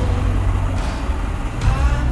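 Road traffic: a heavy vehicle running with a steady low rumble.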